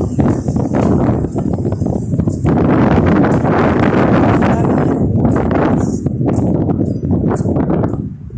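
Footsteps on pavement with loud rustling and rumbling from a hand-held phone's microphone during walking, heaviest from about two and a half seconds in.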